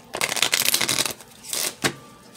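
A deck of oracle cards being shuffled by hand: a rapid crackle of card edges slipping past each other for about a second, then a shorter burst and a single sharp snap of the cards near the end.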